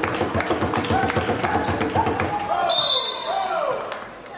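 A basketball being dribbled on a hardwood court with shoes squeaking, then a short, shrill referee's whistle about three seconds in that stops play.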